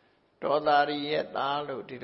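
A Buddhist monk's voice preaching in a drawn-out, chant-like intonation, starting about half a second in after a brief pause.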